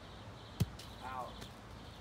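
A baseball bat striking a tossed baseball once, a single sharp crack partway in.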